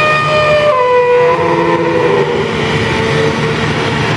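The Grand Éléphant walking machine running: a low diesel-engine drone under a sustained mechanical whine. The whine steps down in pitch twice as the hydraulics work the moving trunk.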